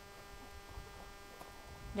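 Quiet open-air background: a low, uneven wind rumble on the microphone under a faint steady hum.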